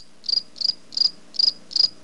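Cricket chirping sound effect, short high chirps evenly spaced at about three a second, the comic 'crickets' gag for an awkward, blank pause.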